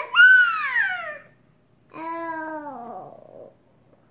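Toddler babbling: a loud, high-pitched squeal that slides down in pitch over about a second, then after a short pause a lower vocal sound that also falls and trails off after about a second and a half.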